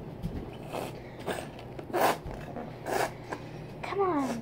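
Plastic packet of paint crinkling and rasping as it is handled and opened, in several short scratchy bursts; the loudest come about two seconds in and a second later.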